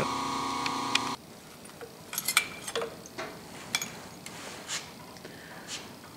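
A steady machine hum cuts off abruptly about a second in. It is followed by scattered light metallic clinks and knocks as the newly milled gear rack is loosened from the mill vise and lifted out among the chips.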